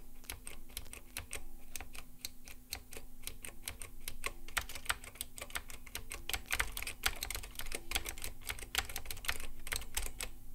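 Fast typing on a Copam K-450 (LogoStar KU-450) keyboard. Its spring-over-membrane switches, each with an Alps-style click leaf, give a steady, rapid stream of thick keystroke clicks.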